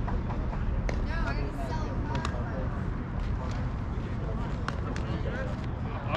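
Indistinct fragments of people talking near the camera over a steady low rumble, with a few faint clicks.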